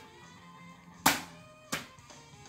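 Two sharp clacks of plastic CD jewel cases knocking together as a case is set on a stack and the next one taken, about a second in and again just over half a second later, over faint background music.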